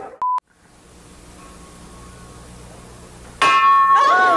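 A short steady beep right at the start, then a faint hum, then about three and a half seconds in a sudden loud ringing clang-like tone with overtones, held steady: a slapstick bell sound effect in a TV comedy clip.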